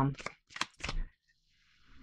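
Tarot cards being handled: about three short, crisp snaps of card stock within the first second, then a brief pause.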